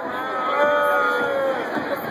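A long, drawn-out shout from someone in the festival crowd, held for about a second with the pitch bending at its ends, over the general noise of the crowd.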